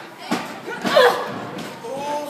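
Two sharp impacts from wrestlers grappling in the ring, about a third of a second in and again about a second in, the second with a short falling cry, over voices.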